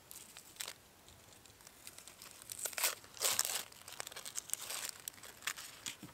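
Dry, papery onion skin being peeled and torn off by hand, in several short crackling, crinkling bursts, the loudest around the middle.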